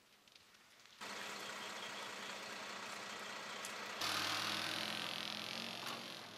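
Fire engine driving along a dirt forest track: steady engine hum and tyre and gravel noise start abruptly about a second in and get suddenly louder about four seconds in as the truck passes close. The first second is quiet, with a few faint clicks.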